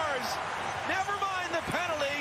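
A man's voice from the match broadcast, speaking with a pitch that rises and falls, just after a goal is called.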